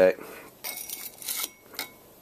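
A flat tool scraping against the metal wheel head of a potter's wheel as it is worked under the edge of a rigid vinyl bat to prise the bat off its pins. There is a scrape lasting most of a second, then a short sharp scrape with a faint ring near the end.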